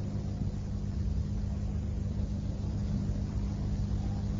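Steady low hum and background noise of an old recitation recording, heard in the reciter's pause between verses.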